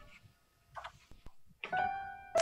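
Quiet room tone with a faint brief noise, then a piano chord struck about one and a half seconds in and ringing on, opening the piano accompaniment of a choral recording.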